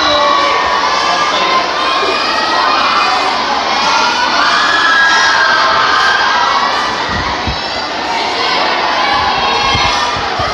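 A large crowd of students shouting and cheering, many high young voices overlapping in a steady loud din.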